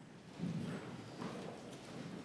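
A few soft footsteps and knocks on a courtroom floor as people move about.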